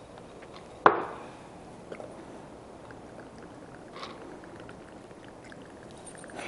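Vodka poured from a bottle into a small jigger, a faint trickle, with a single sharp click about a second in.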